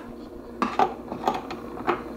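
Light metallic clinks and knocks as the metal parts of an antique phonograph are handled. They come scattered, starting about half a second in.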